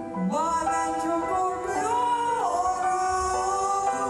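Live female vocal duet with instrumental backing, sung on stage, holding long notes with a downward slide about halfway through.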